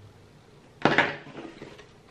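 Two quick clinking knocks close together about a second in, from the metal Shure wireless microphone receiver being picked up and handled over a plastic hard case.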